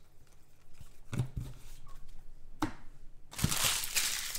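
Trading cards being handled over the table: a few soft knocks, then from about three seconds in a loud crinkling rustle.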